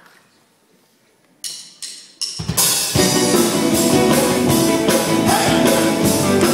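A live band starting a song: after a short hush come three sharp drum hits, then the full band comes in with drum kit, bass and guitars about two and a half seconds in and plays on at full volume.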